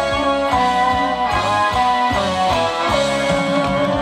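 Live band playing Thai ramwong dance music: an instrumental melody over a steady drum beat, amplified through a PA.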